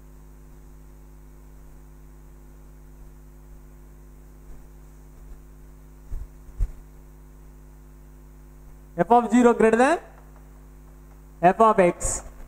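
Steady electrical mains hum, a low buzz with a ladder of evenly spaced overtones, heard under the room. A couple of faint knocks come about six seconds in, and a man speaks briefly near the end.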